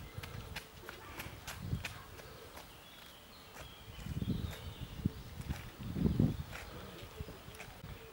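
Outdoor ambience: low rumbling swells about four and six seconds in, with scattered sharp clicks and faint high chirps.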